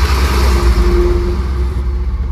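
Heard from inside the cab, a manual light truck's engine pulls under acceleration in second gear, with a heavy low rumble and road noise.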